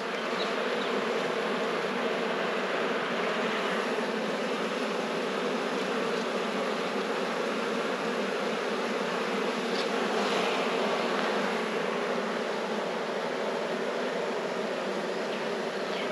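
Honeybee colony in an open hive buzzing as a steady, even hum.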